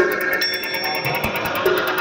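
Experimental electronic music played live from a DJ set: a rapid, even high-pitched ticking pulse over a dense textured bed, with a steady high electronic tone coming in about half a second in.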